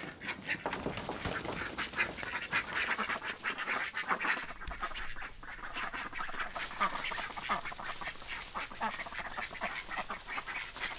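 A flock of young ducks quacking, many short overlapping calls in a constant busy chatter.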